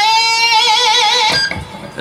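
Electric guitar playing a single picked note at the 10th fret of the B string. The note is bent up, then held with an even vibrato, and cut off after about a second and a half.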